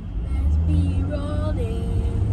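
Chevrolet Camaro SS convertible under way with the top down: a low, steady rumble of engine, road and wind that swells shortly after the start.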